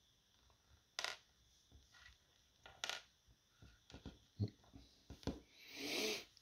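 Small plastic 1/72-scale miniature figure being handled and set down on a hard tabletop: a few sharp clicks and taps of its base and fingers against the table, spread over several seconds, with a brief rustle of the hand near the end.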